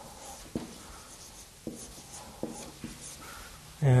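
Marker writing on a whiteboard: quiet strokes with several light ticks of the tip against the board.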